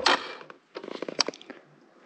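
A dirt bike's single-cylinder four-stroke engine cuts out abruptly, stalling again on a bike that is running badly with something plainly wrong. A short run of crunching clicks follows about a second later.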